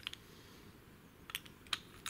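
Lob Granit 1 padlock being handled: a few sharp metallic clicks, one at the start and two close together near the end, as the shackle is worked and pushed back into the body.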